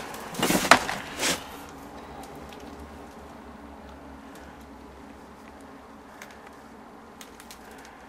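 A few brief rustling and scraping handling noises in the first second and a half as a magazine is picked up and moved, then a low steady background with a faint hum and a few faint clicks.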